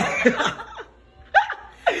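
People laughing in short bursts, with a brief lull about a second in.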